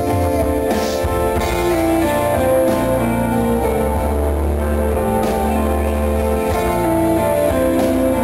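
Live band music: an instrumental passage between the sung lines, with guitar playing over sustained bass notes and chords.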